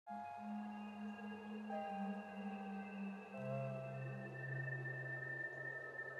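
Slow ambient intro music of long held tones: the chord shifts twice, and a deep bass note comes in about halfway through.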